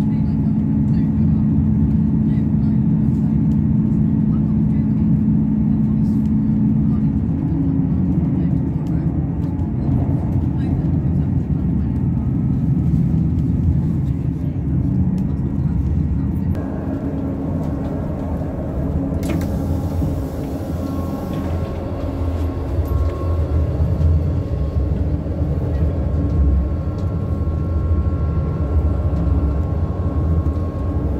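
Cabin noise inside a class 158 diesel multiple unit on the move: the low rumble of its underfloor diesel engine and wheels on the rails. A steady engine hum drops away about seven seconds in, and fainter high steady tones come in past the middle.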